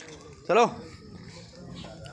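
A billy goat gives one short, loud bleat about half a second in, rising and falling in pitch.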